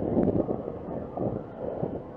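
Wind rumbling and buffeting on a helmet-mounted action camera's microphone as a downhill mountain bike rolls slowly along.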